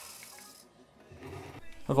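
Near silence: faint room tone, with a man's voice starting right at the end.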